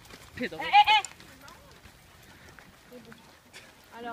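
A high-pitched, sing-song voice saying 'fais bien' once, wavering in pitch, about half a second in; after that only faint background sound.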